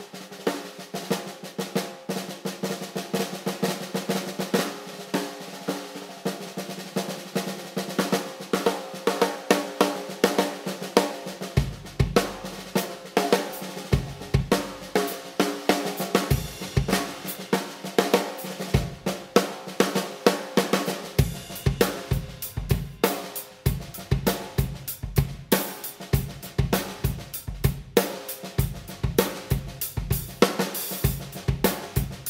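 Premier Aviation Series Spitfire snare drum (14x6.25", 20-ply Georgian oak shell, tuned quite tight) played with sticks in rolls and quick strokes, with a crisp, ringing tone. About a third of the way in, bass drum kicks join. In the last third, cymbal strokes come in as a full kit groove.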